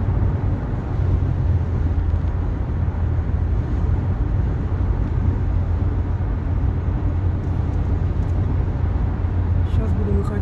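A car travelling on a freeway: a steady, loud, low rumble of road and engine noise that does not change.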